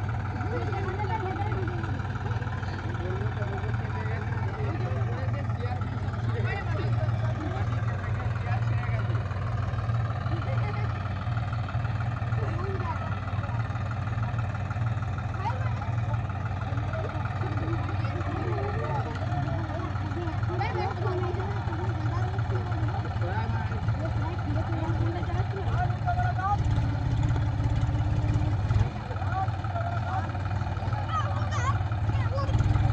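A John Deere tractor's diesel engine idling steadily, with a crowd of people talking in the background. The engine gets a little louder near the end.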